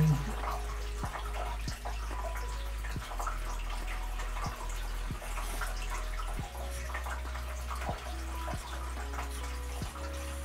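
Carpenter's pencil scratching on a canvas as an outline is sketched, over a steady low hum, with faint light ticks about every three-quarters of a second.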